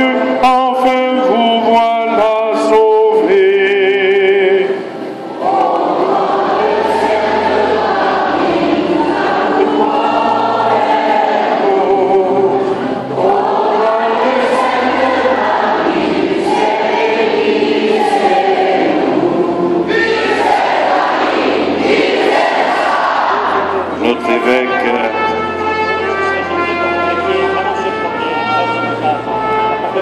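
A hymn sung in church: a single voice carries the opening line, then from about five seconds in the large congregation sings together in swelling phrases over low sustained notes.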